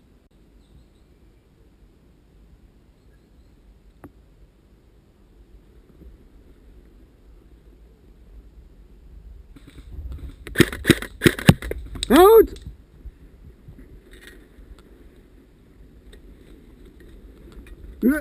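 After a quiet stretch, about six sharp cracks of airsoft gun shots in quick succession, followed at once by a short shout whose pitch falls and rises.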